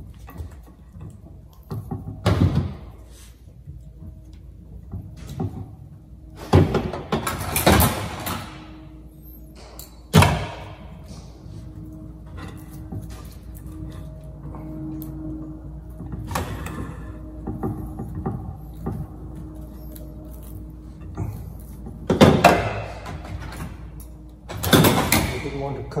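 A live juniper branch being bent and broken off by hand to leave a short jin: several separate cracks and rustles of wood and foliage, the sharpest about ten seconds in.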